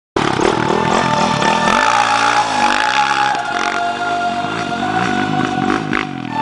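Dirt bike engine revving up and down in repeated blips, mixed with background music.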